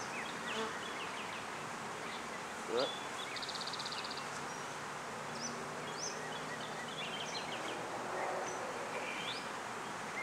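Honeybees from an opened hive buzzing as a steady, even hum, with frames covered in bees being lifted out of the box.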